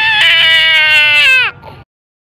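A toddler and a woman screaming together in one long, high shriek that holds steady, then drops in pitch and cuts off about one and a half seconds in.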